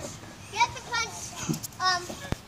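Children's voices at play: three short, high-pitched calls that carry no clear words.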